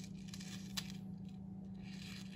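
Loose beads and pearls faintly clicking inside a handmade paper shaker card as it is turned in the hand, with a few small light clicks, one clearer about three-quarters of a second in.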